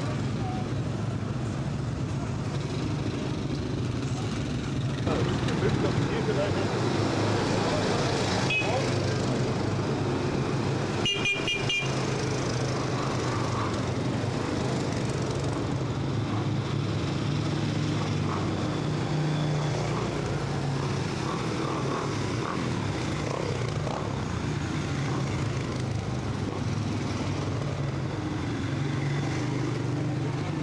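Quad bike (ATV) engines running steadily as a line of quads rides slowly by. A short horn beep comes about eight seconds in, and a quick string of horn beeps a few seconds later.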